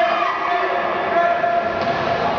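Voices of spectators and players shouting over one another, echoing around an indoor pool hall, with some calls held as long steady yells.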